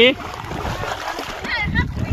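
Splashing and sloshing of people moving through the muddy water of a flooded rice paddy, with voices breaking in briefly about one and a half seconds in.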